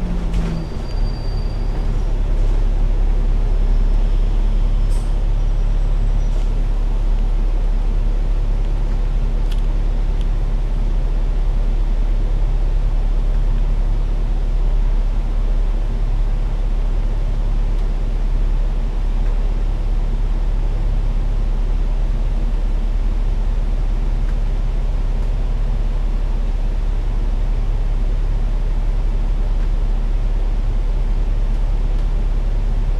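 Engine of a KMB Alexander Dennis Enviro500 MMC double-decker bus running with a steady low drone, heard from inside the upper deck. The bus slows and then idles at a red light. A faint, brief high squeal comes in the first few seconds as it slows.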